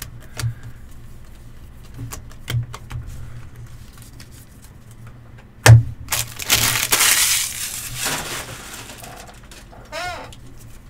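Trading cards being handled: light ticks as cards are flipped through, then a sharp tap as the stack is set down on the table about six seconds in, followed by a couple of seconds of rustling that dies away.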